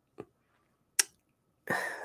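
Two short, isolated clicks, a faint one and then a sharper one about a second in, during a pause in a man's speech close to the microphone. His voice starts again near the end.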